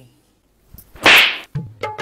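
A single loud, sharp swish-like hit about a second in, lasting under half a second, followed by rhythmic drum music starting halfway through.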